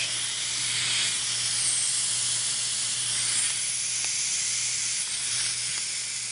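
Compressed-air vacuum ejector of a Piab VGS 2010 gripper hissing steadily as it runs on about 80 psi supply air, its bellows suction cup sealed on a plastic pouch and holding it by vacuum.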